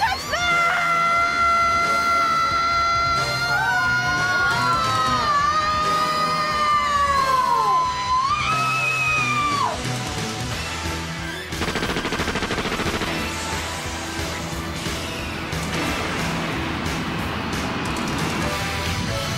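Dramatic anime action-scene soundtrack: a high lead melody held and bending in pitch for about ten seconds, then a dense, rapid rattling roar like gunfire or rocket fire over the music for the last several seconds.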